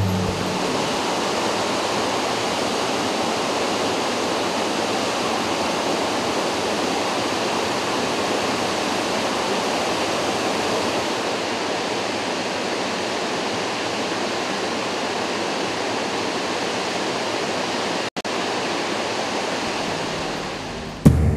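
A large waterfall in flood: a steady, loud rush of falling water, with a momentary break near the end.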